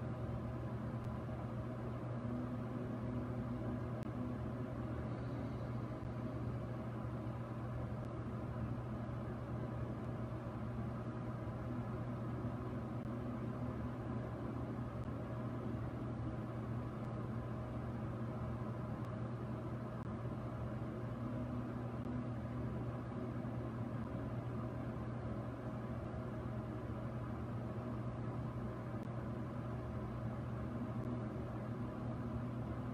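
A steady low hum with a faint even hiss, unchanging throughout.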